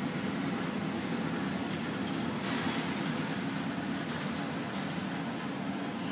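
Steady hum and rush of air from a biosafety cabinet's blower fan, with a brief hiss about two and a half seconds in.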